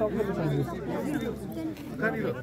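Indistinct chatter of several people in a crowd talking at once.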